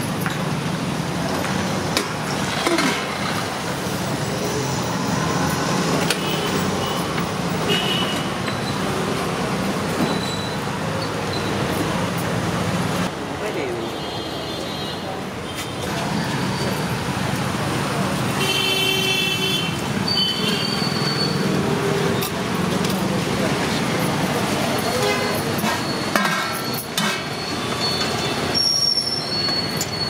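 Roadside traffic running past, with vehicle horns honking twice: once about halfway through and again a few seconds later. Voices murmur underneath, and steel pots and ladles clink.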